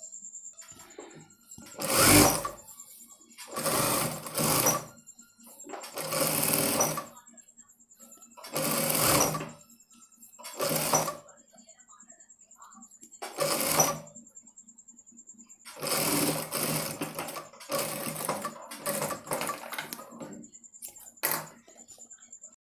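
Industrial single-needle lockstitch sewing machine stitching piping around a blouse neckline in short runs, about nine bursts of a second or two each with brief stops between them to guide the curve. A faint steady high whine carries on through the gaps.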